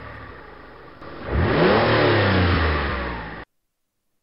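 Car engine sound effect that swells from about a second in, rising and then falling in pitch, and cuts off abruptly about three and a half seconds in.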